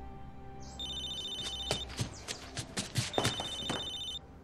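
Mobile phone ringing twice, a high electronic ring of about a second each time, with music underneath.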